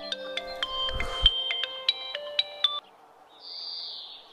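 Mobile phone ringtone: a bright, bell-like tune of quick notes that cuts off suddenly about three seconds in, as the call is answered.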